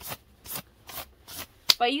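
Rhythmic swishing of a hand rubbing the sleeve of a puffy jacket, about two to three strokes a second.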